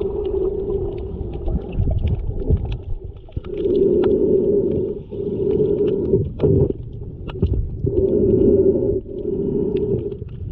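Underwater sound through a GoPro Hero 7 Black's waterproof housing in shallow tide-pool water: a muffled low rumble of moving water with swelling low hums that come and go every second or two, and scattered small clicks and crackles.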